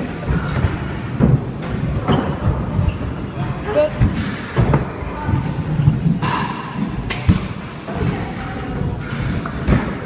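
Irregular thuds and knocks from stunt scooters rolling and landing on plywood skatepark ramps, with indistinct voices underneath.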